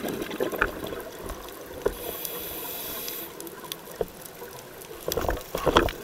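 Scuba diver's regulator breathing underwater: a steady hiss of inhaled air about two seconds in, then a loud, bubbling rush of exhaled bubbles near the end.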